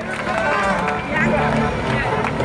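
Loud amplified concert music with a steady, pulsing bass beat, with voices over it.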